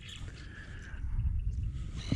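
Wind buffeting the camera microphone: a low rumble that grows louder about a second in.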